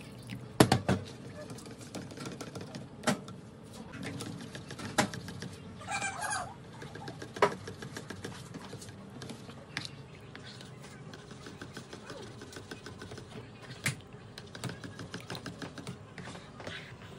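A spatula knocking and scraping against a metal saucepan as thick gravy is stirred to break up lumps, with irregular sharp knocks every few seconds, the loudest just under a second in.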